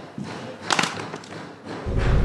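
Film sound effects: a few dull thuds and short hits, the strongest about three quarters of a second in, then a much louder burst starting just before the end.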